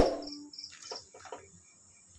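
A sharp knock at the start, then a few light taps and clicks as raw prawns are laid into a frying pan, over a faint, steady high-pitched whine.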